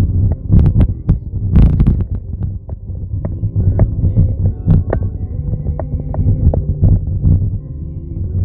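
Low, uneven rumble inside a moving car's cabin, broken by many irregular clicks and knocks, thickest in the first two seconds.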